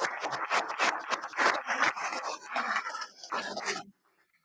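Audience applauding, a dense patter of many hand claps that stops abruptly just before the end.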